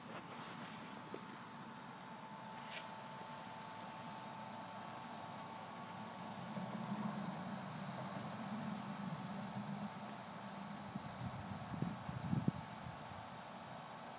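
A steady low mechanical hum, like an engine running, a little louder for a few seconds in the middle, with a few short sounds near the end.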